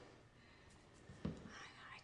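Quiet room tone with a single soft thump a little past halfway, then a breathy intake of breath in the last half second.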